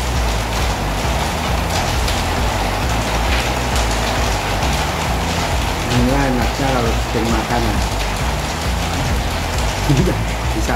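A steady hiss like rain runs under low background music. A man's voice speaks briefly a little past the middle.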